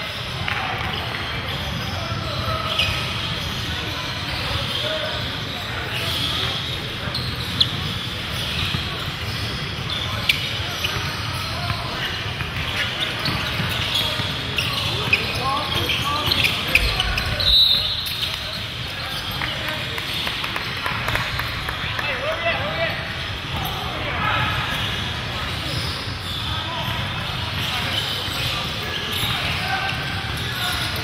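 Basketball game sounds in a large gym: the ball bouncing on the hardwood court, short sharp sneaker squeaks, and indistinct players' and spectators' voices over a steady echoing hall din.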